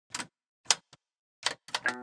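A handful of sharp, unevenly spaced clicks that come faster toward the end, then an electric guitar chord sounds just before the close as the song starts.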